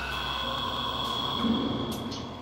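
Software modular synthesizer playing an ambient patch: steady high tones held over a noisy haze, with a brief low swell about one and a half seconds in.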